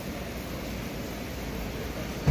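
Steady, even background noise of a supermarket with no distinct events.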